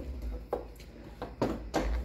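A few light clicks and knocks from hands handling tools and parts on a workbench, over a low steady hum.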